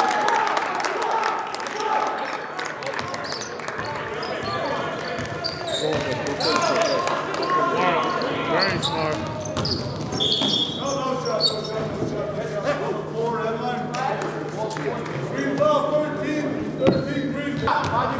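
Basketball game sounds echoing in a gym: a ball bouncing on the court and players' footfalls, under steady talking and calling from players and spectators. About ten seconds in there is a short, high referee's whistle.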